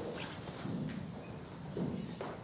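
Chalk tapping and scraping on a blackboard as straight lines are drawn: a few short strokes, the sharpest just after the start.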